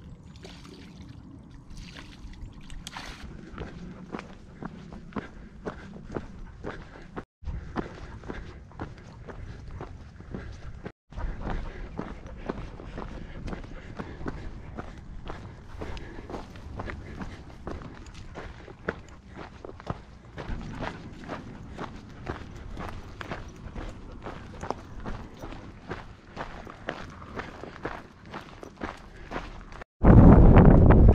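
Footsteps crunching on a gravel and dirt trail at a steady walking pace, heard from the walker's own position. The sound drops out briefly twice, about 7 and 11 seconds in.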